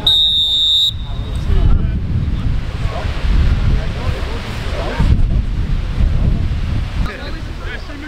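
Referee's whistle blowing one blast of a little under a second, signalling half-time. After it comes a rumble of wind buffeting the microphone.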